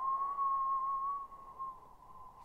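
A steady electronic sine tone of about 1 kHz, with a slight waver, that fades out a little past halfway.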